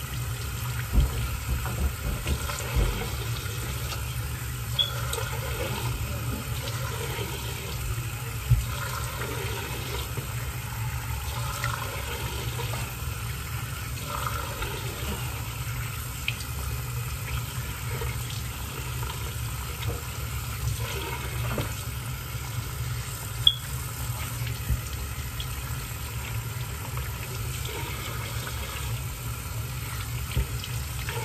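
Bathroom sink tap running steadily into the basin while water is splashed onto the face with the hands, with a few sharp clicks along the way.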